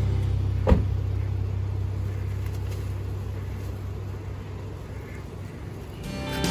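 Car engine idling with a steady low rumble, and a single sharp thump about a second in. The sound fades slowly.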